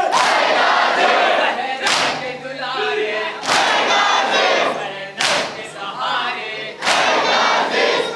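A large crowd of men doing matam, beating their chests with open hands in unison: four loud slaps land together, a little under two seconds apart, with shouted chanting from the crowd between the strikes.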